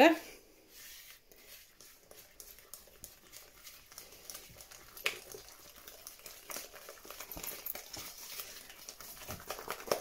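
A whisk beating eggs and flour into batter in a mixing bowl: light, quick clicking and scraping strokes against the bowl, sparse at first and faster and more regular from about halfway.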